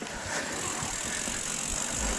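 Mountain bike rolling along a dirt singletrack: a steady crunch of the tyres on dirt and grit with the light rattle of the bike.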